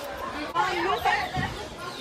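Only speech: several young people's voices chattering over one another, one voice speaking up clearly for about half a second shortly after the start.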